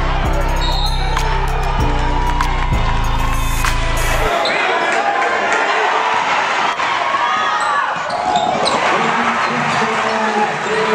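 A hip-hop beat with a heavy bass line cuts off about four seconds in, leaving the live sound of a basketball game in a gym: the ball bouncing on the hardwood, sneakers squeaking and crowd voices.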